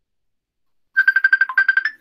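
Mobile phone ringtone: a fast string of short high beeps on one pitch, about ten a second, starting about a second in.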